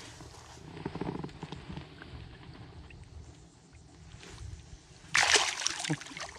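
Water sloshing quietly as a large sheepshead is lowered over the side of a kayak, then a sharp splash lasting under a second near the end as the fish is let go and swims off.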